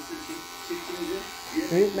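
Wahl electric hair clipper fitted with a 4.5 mm guard, running with a steady buzz as it cuts through beard hair in a fade.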